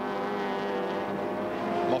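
Racing V8 touring car engines at speed: a steady, droning engine note that sinks slowly in pitch as the cars pass.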